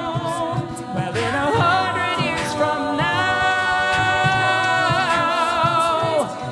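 A cappella ensemble singing sustained wordless chords, with a new chord coming in about halfway through. Vocal percussion clicks keep time underneath.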